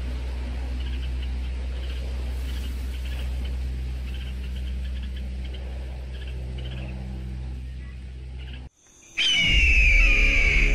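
Small bird chirping in short, irregular calls over a steady low hum; near the end the sound cuts out briefly and a loud raptor screech, falling in pitch, comes in.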